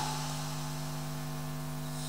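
Steady electrical hum with a faint background hiss.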